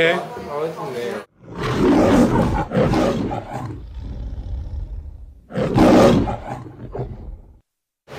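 Roaring sound effect, edited in after a cut to silence: one loud roar that fades over about two seconds, then a second, shorter roar about two seconds later.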